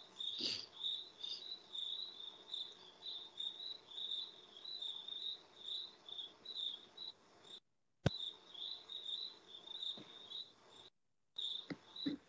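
Faint chirping insect, short high chirps repeating evenly about three times a second, picked up through a video-call microphone. The audio cuts out completely twice for a moment, with a single click between the dropouts.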